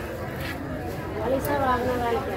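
People talking, with background chatter.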